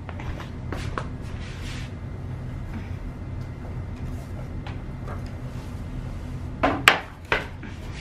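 Decor pieces and a tray being lifted and set down on a glass-topped coffee table as a fur rug is pulled off it: light scattered clicks and rustles, with one sharper clack about seven seconds in. A steady low hum runs underneath.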